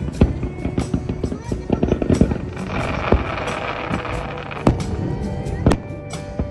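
Aerial fireworks shells bursting, with a run of sharp bangs and a stretch of crackling in the middle; the loudest bangs come just after the start, about two seconds in, and twice near the end. Music plays underneath.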